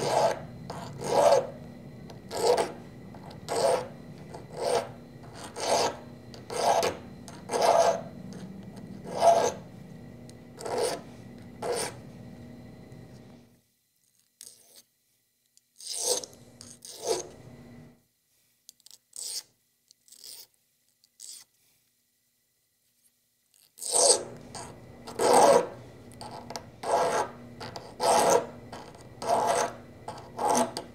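Hand file rasping along the metal edge of a small cloisonné enamel earring in short strokes, about one a second, clearing enamel out of the piece's corners. The strokes stop for several seconds around the middle and pick up again near the end.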